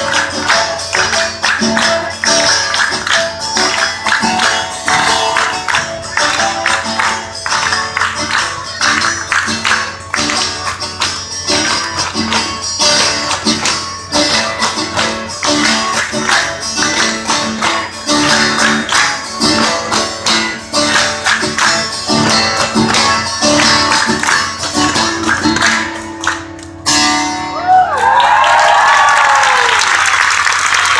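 Live catira music: a strummed guitar and singing, with rhythmic hand claps and foot stomps keeping the beat. About 27 seconds in, the music stops and the crowd applauds.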